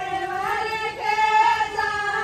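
A woman singing in a high voice, holding long notes that slide up and down, with a rise in pitch and loudness about one and a half seconds in.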